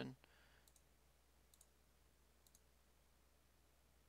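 Faint computer mouse clicks: three quick double clicks about a second apart, over near silence.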